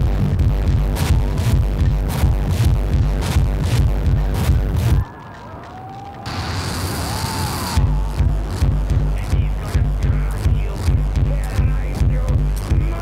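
Electronic music with a steady, heavy bass beat. About five seconds in the beat drops out for a few seconds, giving way to a hiss with a few gliding tones, and then it comes back.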